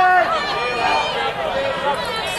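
Several people's voices talking and calling out at once, overlapping, with no clear words.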